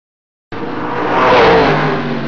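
Race-car sound effect: an engine revving and rushing past, starting suddenly about half a second in, swelling to a loud peak and easing off.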